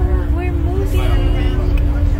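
Tour boat's engine running with a steady low rumble and a constant hum, under indistinct passengers' voices.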